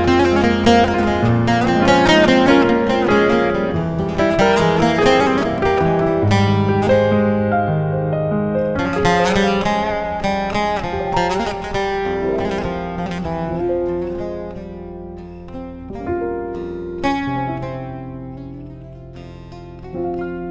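A bağlama (long-necked saz) and a digital piano playing together: rapid plucked bağlama lines over piano chords and low bass notes. The playing grows quieter through the second half.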